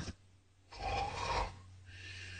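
A person's raspy breath, under a second long, about three quarters of a second in, over a low steady hum.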